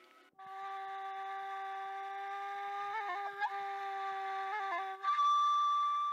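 Solo flute playing one long held note with brief ornamental turns, then leaping to a higher, louder held note about five seconds in.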